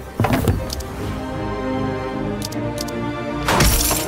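Video slot game soundtrack: looping game music with interface sound effects. There is a sharp hit about a quarter second in, a few short high clicks past the middle, and a louder rushing swoosh near the end.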